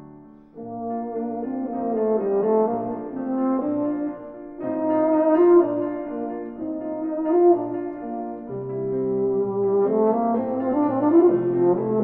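Solo euphonium playing a melody in phrases, with a new phrase starting about half a second in.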